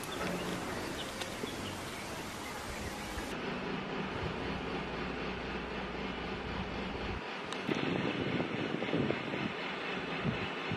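Outdoor background noise: a steady rumble and hiss. About seven seconds in, after an edit, it changes to rougher, irregular noise.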